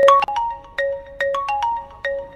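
Mobile phone ringtone: a quick melody of struck, ringing notes, with the phrase starting over at the end.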